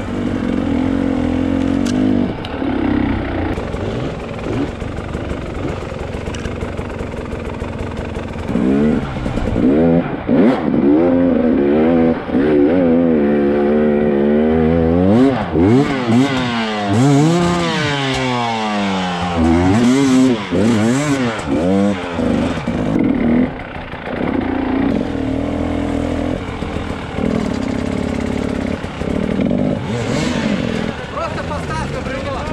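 KTM 300 EXC's two-stroke single-cylinder engine under way on a trail. It runs fairly steadily at first, then from about nine seconds in it revs up and drops back again and again for over ten seconds as the throttle is opened and shut, then settles to steadier running near the end.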